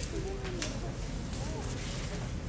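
Faint background voices over a steady low hum, with a few light taps.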